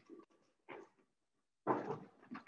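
Faint, broken snatches of people's voices in the room, three short bursts with silence between.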